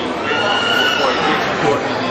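A high, drawn-out call from a penned farm animal, a little under a second long and falling slightly in pitch, over the chatter of a crowd.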